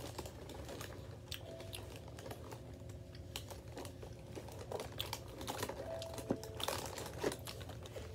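A hand rummaging in a cardboard box of small chocolate graham crackers, giving irregular crinkling clicks, along with a child chewing them. The clicks are loudest and most frequent from about five to seven and a half seconds in.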